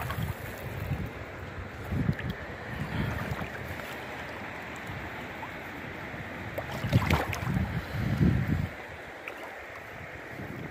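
Shallow stream running over rocks, a steady rushing, with several low thuds on the microphone, the loudest about seven seconds in.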